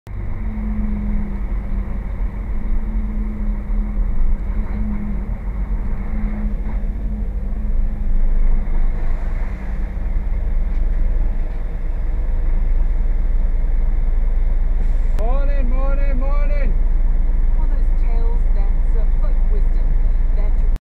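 Truck engine running, heard as a steady low drone through the dashcam in the cab, louder and more even over the second half. Near the three-quarter mark a brief voice is heard over it.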